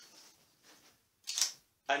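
DSLR camera shutter firing once: a single short click about a second and a half in.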